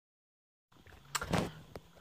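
Dead silence at a cut. About two-thirds of a second in, faint room noise begins, with a couple of soft clicks and a brief low vocal sound such as a breath or hum.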